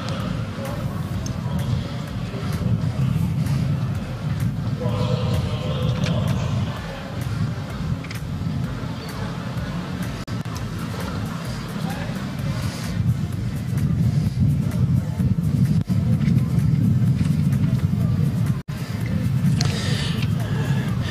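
Outdoor arena ambience: a steady low rumble with faint distant voices.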